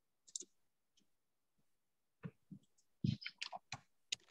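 Computer mouse clicks: a couple of soft clicks near the start, then a quick run of louder clicks and knocks in the second half.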